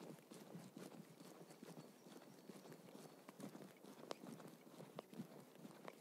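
Near silence: a faint hiss with scattered soft, irregular clicks and crackle.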